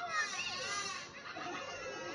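A troop of cartoon monkeys chattering and shrieking in high, wavering voices, loudest in the first second.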